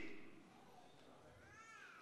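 Near silence, with one faint, short high-pitched cry that rises and falls in pitch near the end.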